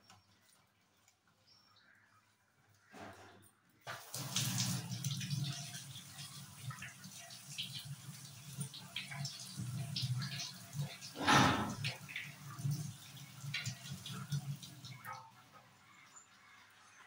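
Kitchen tap running into a stainless steel sink while hands are rinsed under the stream. The water starts about four seconds in and stops shortly before the end, with one louder splash about two-thirds of the way through.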